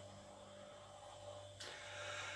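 Near silence: faint room tone with a steady low hum and a light hiss that rises a little near the end.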